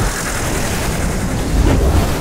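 Heavy rumbling battle sound effects for a giant dragon wreathed in lightning, getting louder in the second half.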